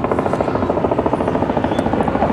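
A steady mechanical drone with a fast, even pulse.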